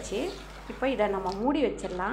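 A woman's voice speaking, in a pause-broken phrase that starts a little under a second in.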